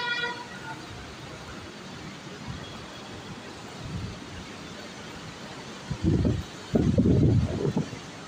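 Steady city traffic noise, with a brief vehicle horn toot right at the start. Near the end, wind hits the microphone in two loud low rumbles, the second longer.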